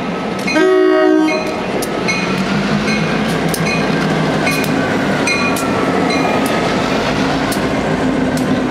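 Union Pacific diesel freight locomotives passing close by. A short horn blast sounds about half a second in and is the loudest moment. The diesel engines then run past with a slowly rising and falling whine and repeated clicks of wheels over the rail joints.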